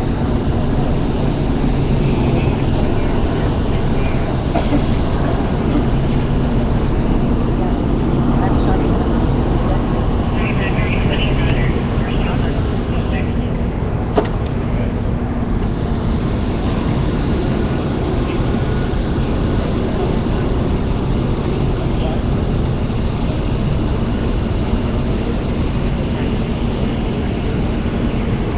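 Steady low engine-like rumble with a constant low hum, under indistinct crowd voices; a single sharp click about halfway through.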